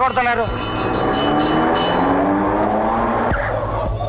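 Car engine revving up, its pitch rising steadily, over a rushing noise. It cuts off sharply a little after three seconds in.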